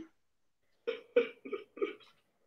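Four quick, breathy bursts of a person's voice, starting about a second in and spaced about a third of a second apart.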